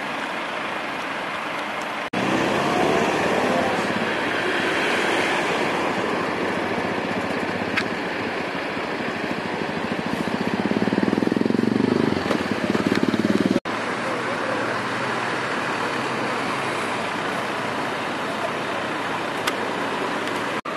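Road traffic: car engines and tyres on the road, with one car driving past close by, growing louder from about ten seconds in before the sound cuts off abruptly. The sound jumps in level at cuts about two and fourteen seconds in.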